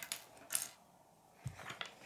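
Small plastic LEGO bricks clicking against each other and tapping on a wooden tabletop as pieces are picked out of a pile: a few sharp clicks, the loudest about half a second in, and a quick cluster of clicks near the end.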